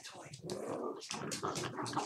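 Shiba Inus growling at each other in rough play, a dense continuous growl starting about half a second in.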